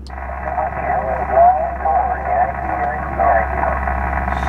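20-metre single-sideband receive audio from an Icom IC-7000's speaker: band noise with a faint, garbled voice of a distant station sending its callsign. The sound is narrow and thin, like a telephone.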